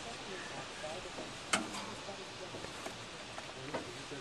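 Quiet handling of a belt and a homemade crank-turning tool at the front of a seized engine, with one sharp click about a second and a half in. Faint voices are in the background.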